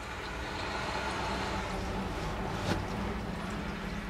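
A loud car going by, a steady rumble and road noise that swells a little in the middle and eases off near the end.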